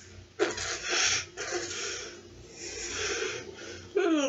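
Stifled laughter: a few sharp, hissing bursts of breath through the nose, with a muffled hum, from a boy holding liquid in his mouth with his lips shut to keep from laughing.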